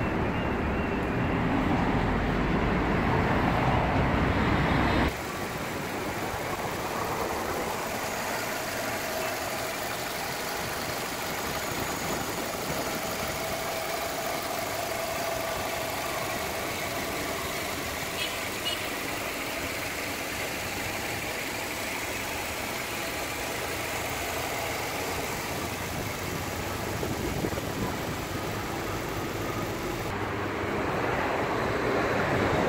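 A 2015 Nissan X-Trail's four-cylinder engine idling steadily, heard as an even mechanical hum. The sound is louder and deeper for about the first five seconds, then drops suddenly.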